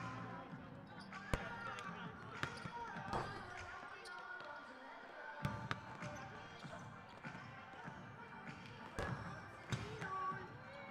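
Basketballs bouncing on a hardwood court during warm-ups: irregular sharp thuds, several at once at times, over indistinct voices.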